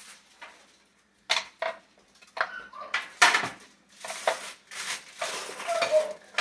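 Clattering and crinkling of a foil-lined baking tray being handled on a kitchen counter. A few sharp knocks come about a second in, then rustling and clattering run on busily.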